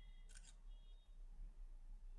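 Olympus VD-140 compact digital camera's shutter sound as a photo is taken: one short, crisp click about a third of a second in.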